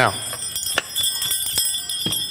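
Small jingle bells ringing as a cloth Christmas stocking is shaken and a hard drive in its case is pushed down inside it, with a couple of light knocks about halfway through.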